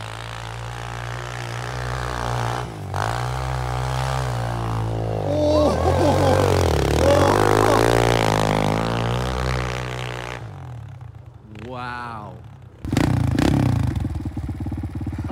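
Kawasaki KLX pit bike's single-cylinder four-stroke engine revving up and down as the bike spins through snow. It grows louder as the bike comes close, is loudest in the middle, then fades after about ten seconds. Near the end the engine runs steadily close by.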